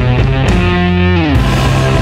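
Psychedelic stoner blues rock recording with electric guitar over a steady low end; about a second in, a held note slides down in pitch.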